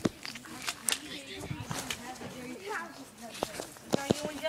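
Children's voices calling out in the background, not close to the microphone, with a few sharp clicks and knocks.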